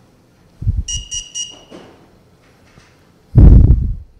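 Three quick high electronic beeps from the FLIR thermal camera, the signal that its power-up self-test has finished and it is going into Bluetooth pairing mode. Near the end comes a loud, low, half-second rumble.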